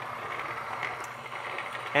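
Niche Zero conical burr coffee grinder running, grinding espresso beans with a steady, even grinding noise.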